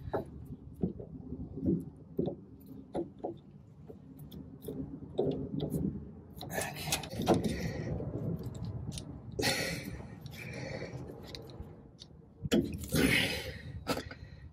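Small metallic clicks and scrapes of pliers working a cotter pin out of a tie rod end's castle nut, with several louder scraping, rustling stretches in the second half.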